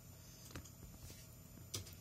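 A few faint clicks in a quiet room, the loudest cluster just before the end.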